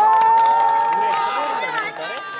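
A high voice holds one long, steady note for about a second and a half over crowd noise, with a few scattered claps.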